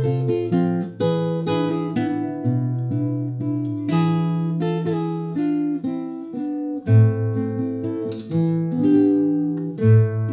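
Acoustic guitar playing an instrumental break with no singing: plucked and strummed chords ringing out over a changing bass line.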